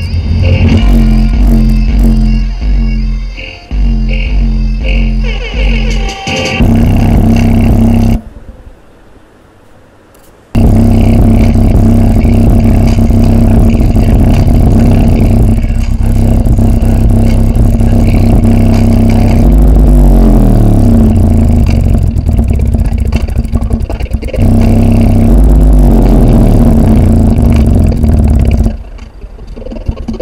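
Loud, bass-heavy music with distorted bass playing through a woofer in a wooden cabinet, the cone pumping hard on the low notes. The bass notes are held steady and drop out for about two seconds around a third of the way in. About two-thirds in, a bass note slides downward.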